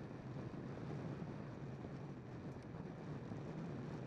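Quiet, steady wind rush on the microphone with a low engine hum from a moving camera vehicle.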